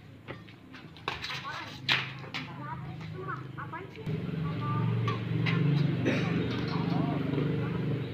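Badminton rally: a few sharp racket hits on the shuttlecock in the first half, over spectators' chatter. About halfway through, a steady low hum joins in and carries on to the end.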